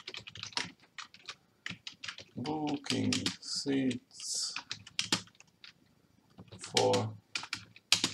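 Typing on a computer keyboard: quick, irregular keystrokes in short runs.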